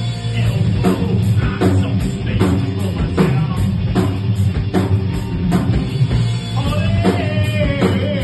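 Live rock band playing: electric guitars, bass and drum kit on a steady beat of about two hits a second, with a man singing a held, bending line near the end.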